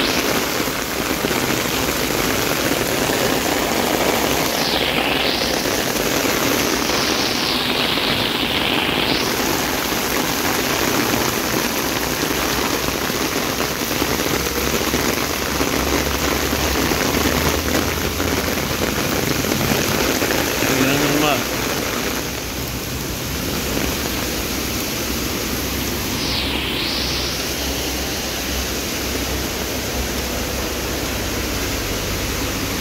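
Heavy rain pouring down onto a flooded street in a dense, steady hiss. About two-thirds of the way through it turns somewhat duller and quieter.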